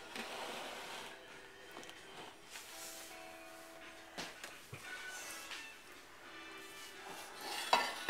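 Faint background music with a few steady tones, and soft knocks and rustles as raw sausage is pushed from its paper wrapper into a pan.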